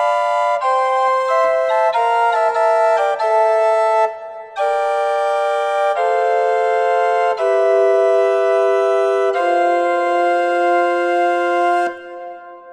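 Organetto (small portative pipe organ) playing a slow polyphonic passage of sustained notes in several voices, with a short break about 4 s in. It closes on a long held final chord: a 14th-century cadence in Pythagorean tuning, where the impure thirds and sixths build tension that resolves onto purely tuned fifths and octaves.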